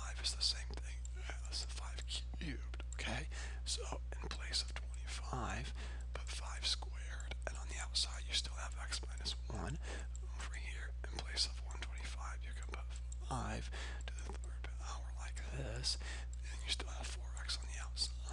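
Computer mouse buttons clicking irregularly, about one or two short sharp clicks a second, as the mouse is used to handwrite on a screen, over a steady low electrical hum.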